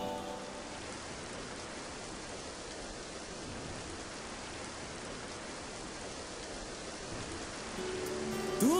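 Steady rain falling, an even hiss with no rhythm or pattern.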